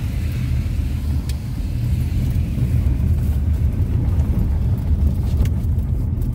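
Steady low rumble of a Honda CR-V heard from inside its cabin: tyre and engine noise while driving on a wet dirt road, growing slightly louder in the first couple of seconds and then holding steady.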